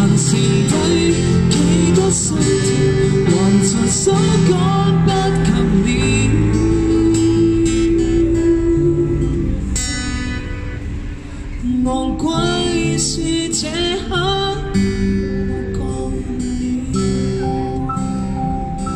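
Live acoustic band music: acoustic guitar and electronic keyboard playing under a lead melody line, with a brief dip in loudness about two-thirds of the way through.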